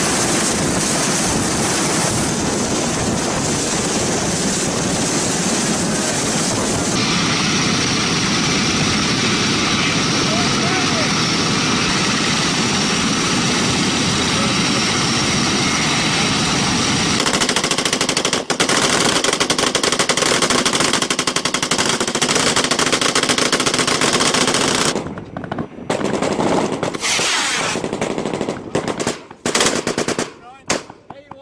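Loud, steady noise for the first part, then rapid machine-gun fire from a little past the middle, thinning into short separate bursts near the end.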